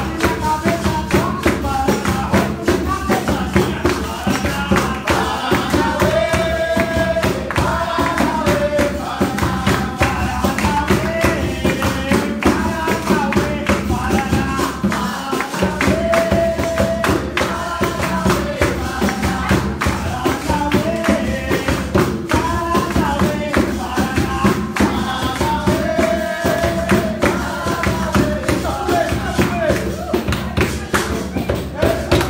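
Live capoeira roda music: call-and-response singing over pandeiro and other percussion, keeping a steady rhythm.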